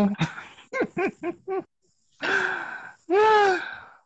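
A person's voice making non-word sounds: a short run of four quick laugh-like syllables, then a breathy sigh, then a long drawn-out vocal sound whose pitch rises and falls.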